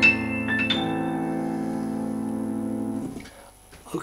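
Digital stage keyboard with a piano sound playing the closing bars: a few quick high notes over a held chord. The chord rings on and is released about three seconds in, ending the piece.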